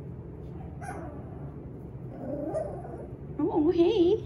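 A young puppy whimpering briefly, a short bending cry around the middle, over a steady low hum. A woman's voice starts near the end.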